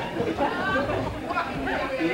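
Indistinct voices talking over one another, a murmur of chatter with no clear words.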